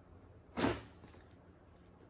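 A knife drawn once through the packing tape on a cardboard box: a single quick slicing swish about half a second in.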